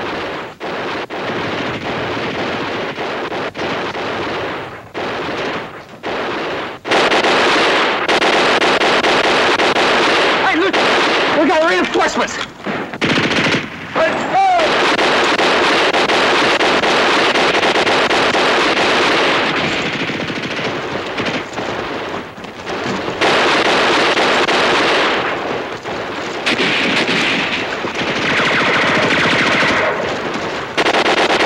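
Battle sound mix from a 1960s TV war drama: near-continuous bursts of machine-gun fire with gunshots, louder from about seven seconds in and broken by a few short pauses.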